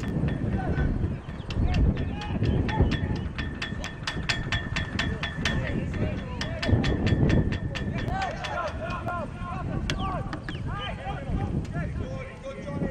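Outdoor ambience with low wind-like rumble on the microphone. An even run of sharp clicks, about four or five a second, fills the first half, then a series of short rising-and-falling chirps follows.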